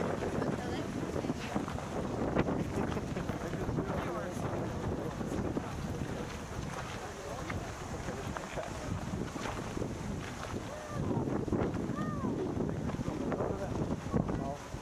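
Wind buffeting the camera's microphone, a steady rumbling noise, with faint voices of passers-by in the background.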